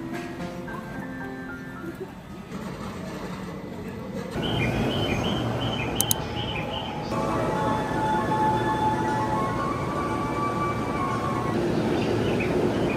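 Soft background music, then from about four seconds in the busy noise of a train station with a melody of short high chime notes over it and a single sharp click about six seconds in.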